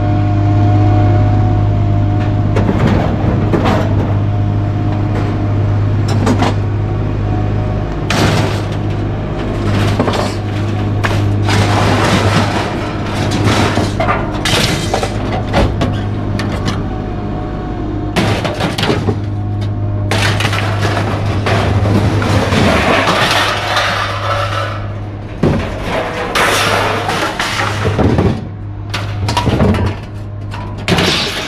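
Steel scrap being pulled off a loaded truck bed and dropped onto a scrap pile: repeated metal clanks, bangs and clattering crashes at irregular intervals, over a steady low engine hum.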